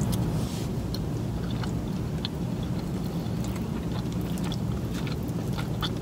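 A mouthful of Chipotle burrito bowl being chewed: soft, scattered wet mouth clicks over a steady low hum inside the car's cabin.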